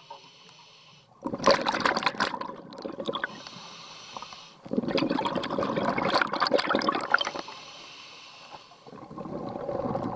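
A scuba diver breathing through a regulator. Three long rushes of exhaled bubbles start about a second in, near the middle and just before the end. Between them come quieter inhalations with a thin, high hiss.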